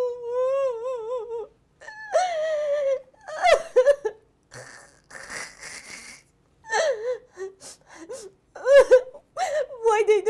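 A woman's voice in acted crying, whimpering and wailing in long, wavering, drawn-out sobs. About five seconds in there is a breathy sniffle into a cloth.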